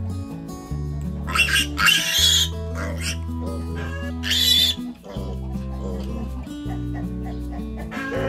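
A piglet squeals loudly twice during castration, first about a second and a half in and again around four seconds in, over background music with a steady bass line.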